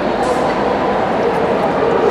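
Steady hubbub of a large crowd talking, with dogs barking in the background.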